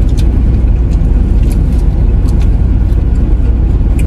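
Steady low rumble inside a car's cabin, with a few faint light clicks.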